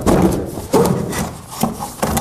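The inlet's folded box, used as the attic insulation stop, being pushed up into a framed ceiling opening. It rubs and scrapes against the frame in several short scrapes, with a few sharp knocks.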